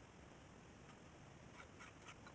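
Faint scraping of a hand trowel over wet cement, a few short strokes in the second half, over near silence.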